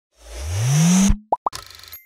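Channel logo intro sound effect: a whoosh swelling for about a second with a rising low tone, ending on a sharp hit, then two quick plops and a brief fluttering shimmer as the logo appears.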